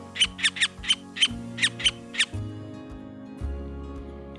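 White-fronted woodpecker calling: its usual two-note call repeated as a quick run of short, sharp, high notes, which stops a little over two seconds in. Soft background music plays throughout.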